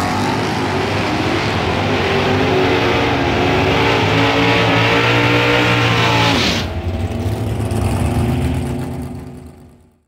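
A drag car's 440 big-block V8 running at full throttle down a drag strip, rising in pitch through the gear changes. About six and a half seconds in, the loud rasp drops off suddenly, and the engine fades away toward the end.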